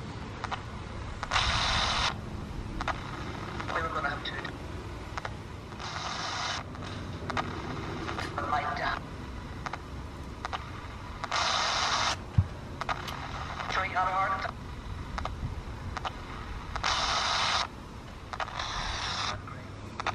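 A Panasonic pocket radio modified as a Panabox spirit box, sweeping the FM band. About five short bursts of static hiss come at intervals of a few seconds, with brief fragments of broadcast voices between them.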